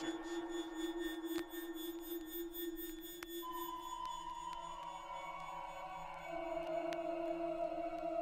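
Beatless passage of a drum and bass DJ mix: a held low electronic tone, joined by a higher tone about three and a half seconds in and another around six seconds, with no drums and only a few scattered clicks.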